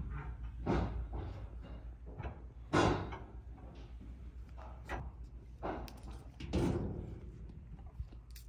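Horse breathing and sniffing at a paper slip held to his nose: about five short breaths, the loudest about three seconds in, over a low steady rumble.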